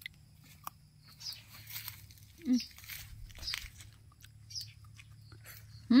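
Faint close biting and chewing of a fresh mata kucing longan fruit: scattered small clicks and crackles as the thin peel is bitten and the flesh chewed.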